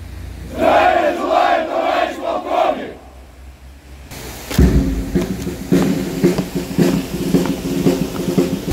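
A formation of soldiers shouting a phrase together in unison for about two seconds, the way a military formation answers an officer's greeting. After a pause, a steady low rumble in the outdoor background from about halfway through.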